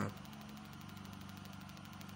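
Faint, steady low electrical hum with a fast, even buzz running under it: the background noise of the voice recording.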